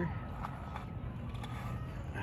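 Steady low outdoor rumble, with faint voices in the background.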